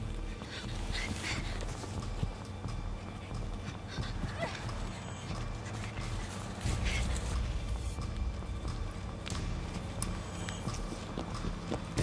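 Low, steady film-score drone, swelling about two-thirds of the way through, under scattered rustles and footfalls through brush.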